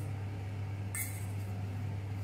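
A single short clink of kitchenware on a counter about a second in, over a steady low hum.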